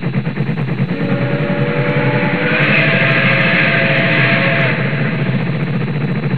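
Background music with guitar. A fast rhythmic pulsing fades out about a second in as held guitar notes come in, and the music grows fuller a little after two seconds.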